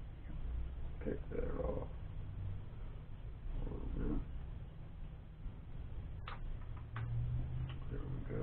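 DJI Mavic Air 2 drone being handled as its folding arms are opened out, with three sharp plastic clicks close together near the end. Under it runs a steady low hum, and two short vocal sounds come earlier.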